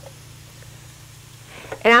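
Quiet room tone with a steady low hum. A woman starts speaking near the end.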